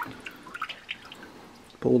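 Water dripping and splashing lightly in a plastic bucket as a handheld grabber lifts a drowned mouse out, with a scatter of small ticks.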